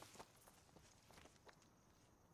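Faint footsteps on a dirt woodland path strewn with dry leaves and twigs: a few soft, irregular steps.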